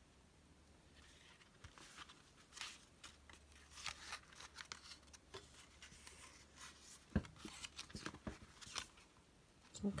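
Paper pages of a small pocket notebook being turned and handled, a run of faint, crisp rustles and flicks starting about two seconds in. The pages are stiff with glued-on collage.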